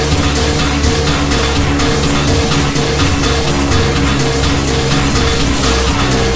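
Instrumental passage of an electronic indie-pop song with no singing: a short repeating melodic figure over a sustained bass and a steady beat.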